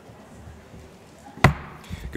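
A wooden gavel struck once, sharply, about one and a half seconds in, with a short ring in the hall, then a softer knock just after: the chair calling the meeting to order.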